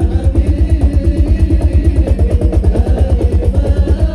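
Sholawat ensemble percussion: a fast, even run of deep drum strokes, about eight a second, with the ensemble's melody above. The singing drops back during it.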